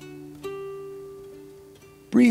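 Acoustic guitar played softly: plucked notes ringing on and slowly fading, with a fresh note picked about half a second in.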